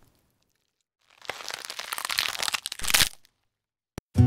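Crackling noise effect from an animated end card. It starts about a second in, runs for about two seconds and ends in a louder, deeper burst.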